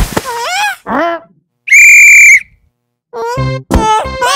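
A single loud, steady whistle blast of under a second, typical of a sports whistle, in the middle. Before it there is a thud and two short cartoon cries that glide in pitch, and music begins near the end.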